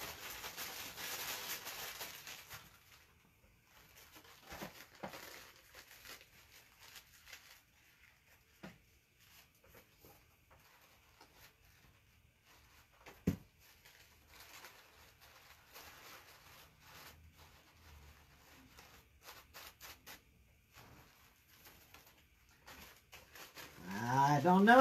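Quiet paper-crafting handling: faint rustling of crumpled coffee-filter paper and small taps from a hot glue gun being worked into the flowers, a little louder in the first couple of seconds, with one sharp click a little past halfway.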